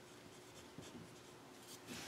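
Faint scratching of a pen writing on paper, a run of short strokes.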